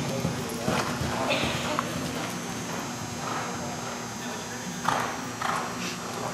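Hoofbeats of a thoroughbred cantering on soft indoor arena footing, a series of dull uneven thuds.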